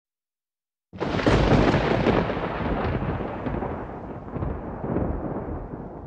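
A sound effect on the opening title: a sudden deep rumbling boom about a second in, fading slowly over the next few seconds.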